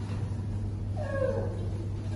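Steady low room hum, with one short, high, falling vocal sound about a second in, from a young child.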